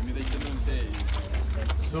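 Outdoor background chatter of people talking, with a steady wind rumble on the microphone and small handling clicks; a low wavering voice-like sound comes shortly after the start.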